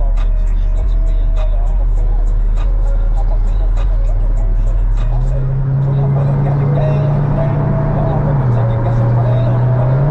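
Car cabin sound while driving: engine and road drone, whose low engine note rises in pitch about halfway through as the car speeds up, then dips near the end before climbing again. Music and faint voices play over it.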